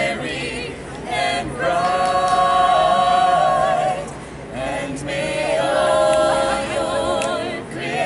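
A small mixed quartet of carolers singing a cappella in close harmony, holding long chords: one from about a second and a half in to about four seconds, a short dip, then another near the end.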